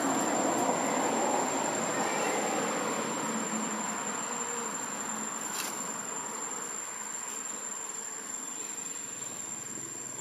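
Steady high-pitched insect drone, over a broad rushing noise that is loudest at the start and fades away over the seconds.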